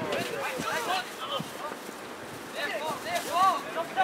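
Football players shouting short calls to each other during play, several voices overlapping.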